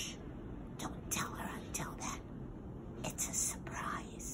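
A woman whispering in short breathy phrases, with hissy 's' and 'sh' sounds.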